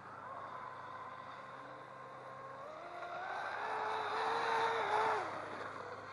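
Radio-controlled tunnel-hull racing boat's motor whining as it runs across the water. Its pitch climbs about halfway through, it grows loudest, and then the pitch drops and it fades shortly before the end.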